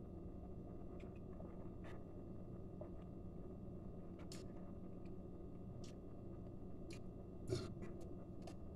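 Quiet room with a steady low hum, broken by about half a dozen faint short clicks and smacks: the small mouth and plastic-bottle sounds of someone drinking and tasting a soda.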